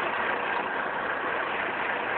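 Truck engine running steadily with an even, unchanging hiss of noise.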